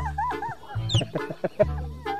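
Comic clucking sound effect, short repeated calls, laid over background music, with a quick falling whistle about a second in.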